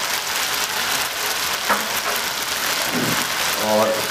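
Chilli-soy sauce sizzling steadily in a hot wok, with an even hiss and a single light click partway through.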